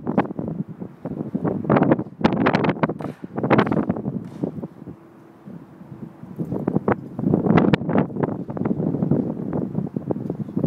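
Wind buffeting a phone's microphone in loud, irregular gusts, easing to a lull about halfway through before picking up again.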